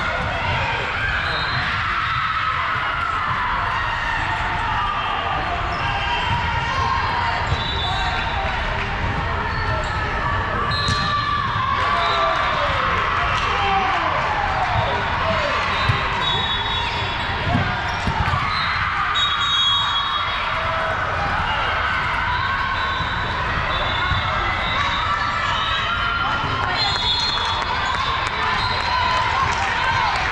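Busy sports-hall din: many voices talking and calling, with balls bouncing on the hardwood courts, all echoing in the big hall. Now and then short high-pitched tones cut through.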